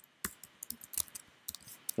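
A quick, irregular run of sharp clicks, about a dozen in two seconds, from computer keyboard keys pressed during editing.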